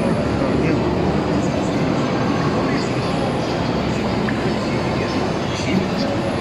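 Busy exhibition-hall din: a steady low rumble under indistinct crowd chatter.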